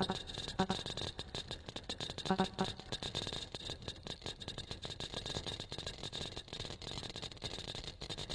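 Electronic tape part of a contemporary percussion-and-electronics piece: dense crackling, rattling clicks with a hissy whispered-voice layer and a few short pitched fragments, with no percussion playing.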